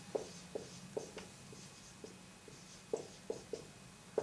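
Dry-erase marker writing on a whiteboard: a run of short, quiet taps and faint scratching as letters are written.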